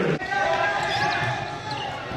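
Basketball game sound in a gymnasium: a ball bouncing on the hardwood court amid voices, with an abrupt edit cut just after the start.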